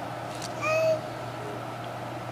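A baby's short high-pitched squeal, once, a little over half a second in.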